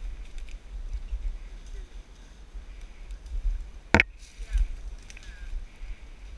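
Footsteps pushing through forest undergrowth and leaf litter, with handheld-camera handling rumble and scattered small crackles. A single sharp crack, such as a stick snapping underfoot, sounds about four seconds in.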